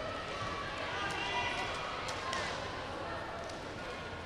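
Echoing sports-hall ambience: indistinct voices calling out, with a few sharp knocks or thuds.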